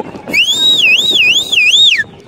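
A siren-like whistle. It rises at the start, then wavers up and down in pitch about three times and drops off at the end, mimicking a police siren.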